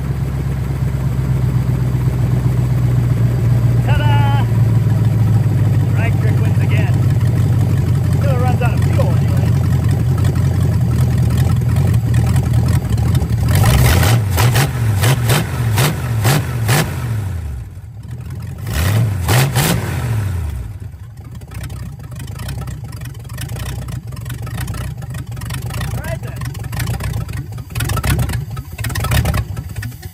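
The 1957 Plymouth Belvedere's engine running, held on the throttle by hand at the carburetor. About fourteen seconds in it is revved up and down a few times and nearly dies, then runs on more quietly and unevenly. It is being kept alive on a carburetor with a bad needle and seat that lets fuel pour over.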